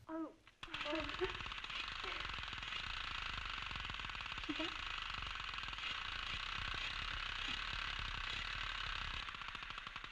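Sustained automatic gunfire from an old film soundtrack, a steady rapid rattle starting about a second in, with a few brief spoken words.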